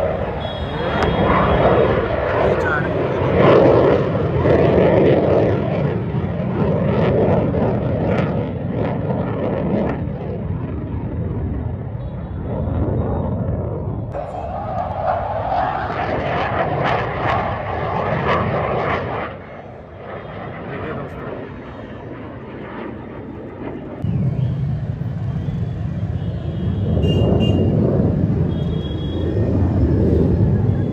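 Jet aircraft of an aerobatic display flying overhead, their engine noise rising and falling as they manoeuvre. The noise drops away for a few seconds about two-thirds of the way through, then comes back loud.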